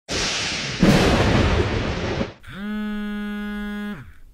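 Edited-in sound effects: a noisy whoosh with a bang-like hit about a second in, lasting about two seconds. Then a steady, buzzy electronic tone swoops up into its pitch and holds until it cuts off at the end.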